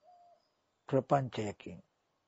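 A man's voice speaking a short, drawn-out phrase about a second in, after a faint steady tone at the start.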